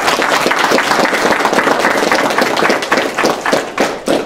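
A small crowd applauding: dense, quick hand claps that thin out near the end.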